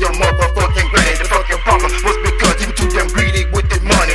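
Hip hop track: rapped vocals over booming sub-bass, rapid drum hits and a repeating synth note.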